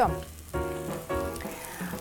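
Frying pan sizzling softly as lavash and cheese cook, under background music with held notes.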